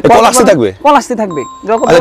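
A voice over music, broken about a second and a half in by a short electronic beep-like chime.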